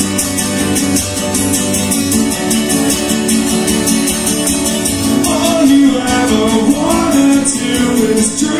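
Acoustic guitar strummed steadily in a fast, even rhythm, played live through a PA, with a voice singing over it from about five seconds in.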